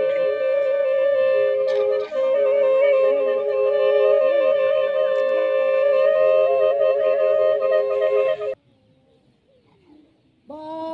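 Music of two held, flute-like wind notes with a slight wavering, stopping suddenly about eight and a half seconds in.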